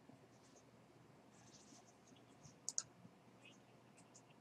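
Near silence with faint clicks from someone working a computer, and two sharp clicks in quick succession a little past the middle.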